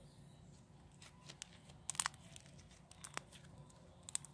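Stretchy slime being pulled and worked between the fingers, making faint scattered clicks and pops.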